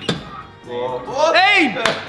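A sharp knock right at the start and another near the end, from the padded ball of an arcade boxing machine being struck. In between, a loud, drawn-out shout rises and then falls in pitch.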